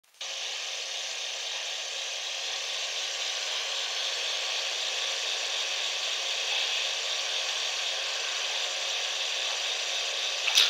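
Steady hiss of an audio recording's background noise, starting suddenly just after the start and holding unchanged, with no distinct sounds in it.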